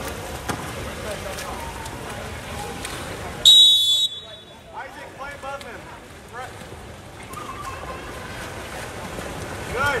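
A referee's whistle blows once, a short, shrill blast about three and a half seconds in, the loudest sound here, followed by shouting voices around the pool.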